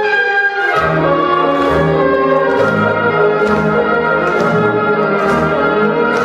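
Recorded orchestral accompaniment with brass to the fore, in an instrumental passage without voice: sustained chords over a bass line that moves about every half second.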